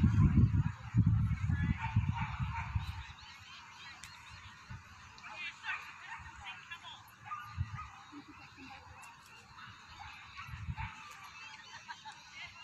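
Outdoor crowd ambience: background chatter with scattered short animal calls, likely dogs at the show. Low irregular rumbling buffets the microphone for the first three seconds and briefly twice more later.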